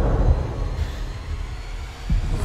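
Trailer sound design: a deep low boom right at the start, then a low rumbling drone that fades away.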